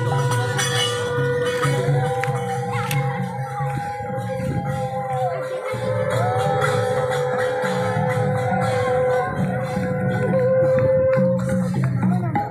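Harinam kirtan: devotional processional music with long held notes over steady rhythmic percussion and jingling, like hand cymbals.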